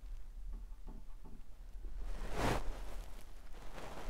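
A paintbrush working oil paint on canvas over a low room hum: a few faint short dabs, then one louder brief swish about two and a half seconds in.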